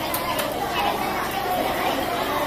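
Background chatter of several people talking, with a couple of faint knocks near the start.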